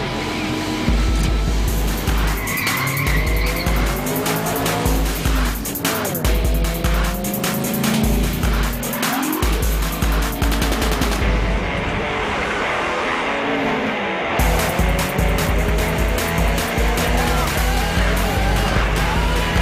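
Street-racing car sound effects over a rock soundtrack with a heavy pulsing beat: engines revving up and down and tires squealing.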